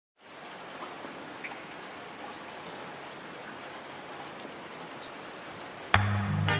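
Steady rain, a soft even hiss with faint scattered patter. Just before the end, music cuts in with a sharp hit and a deep bass note.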